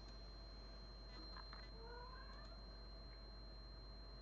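Near silence: room tone with a faint steady high-pitched whine and a low hum, and a faint brief rising sound about two seconds in.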